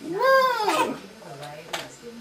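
Baby's high-pitched squeal, one call that rises and then falls in pitch and lasts under a second. A short click follows near the end.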